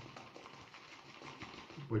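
Shaving brush whisking Proraso green shaving cream into lather in a shaving bowl: faint, fast, wet clicking and swishing.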